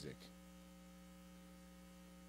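Near silence: a faint, steady electrical hum from the sound system, with no other sound.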